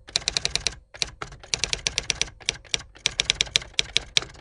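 Rapid typing: runs of sharp keystroke clicks, about ten a second, broken by short pauses between runs.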